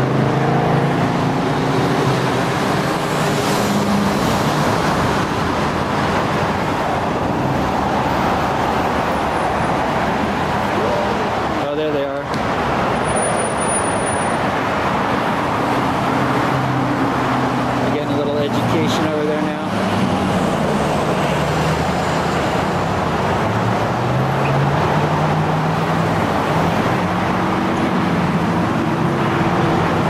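Steady road traffic noise with cars passing, and indistinct voices of people talking underneath.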